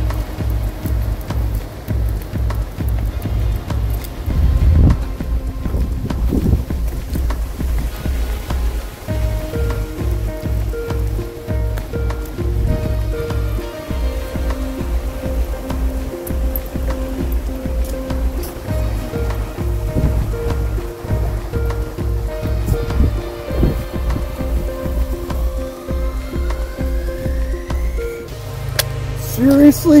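Background music with a steady bass beat and held melody notes.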